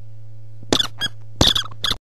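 Short, high squeaks in two quick groups, about two or three at a time, over a steady low hum; everything cuts off abruptly at the end.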